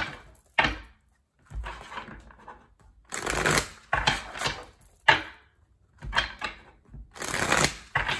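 A tarot deck being shuffled by hand: rustling, slapping card noise in about six short bursts with brief pauses between.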